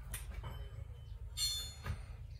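Low, steady engine rumble inside a bus cabin, with a short high-pitched metallic squeal about one and a half seconds in and faint clicks.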